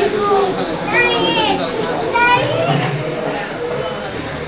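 Children's voices talking and calling out, mixed with other speech.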